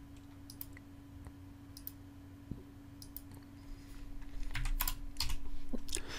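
Computer keyboard and mouse clicks: a few scattered single clicks, then a denser run of keystrokes in the last two seconds, over a faint steady electrical hum.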